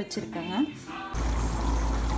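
Water with whole spices heating in a cooking pot. A steady hiss with a low rumble sets in abruptly about a second in.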